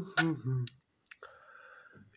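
A man's short wordless vocal sound with a few sharp clicks in the first second, then a faint steady hiss.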